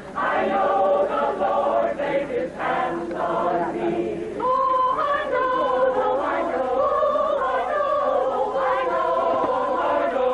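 Mixed choir of men's and women's voices singing. A brief break comes right at the start, and from about halfway the voices hold long, steady chords.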